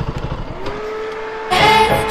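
A KTM RC motorcycle's single-cylinder engine idles, its firing pulses dying away about half a second in as it is shut off. Music starts about a second and a half in.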